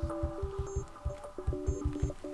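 Quiet background music, a simple melody of held notes, over a quick series of soft low thuds from a fingertip tapping a Samsung Galaxy Tab Active's touchscreen, about seven taps.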